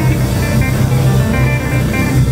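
Live blues band vamping softly on a steady groove, the bass guitar holding low notes under guitar and keyboard.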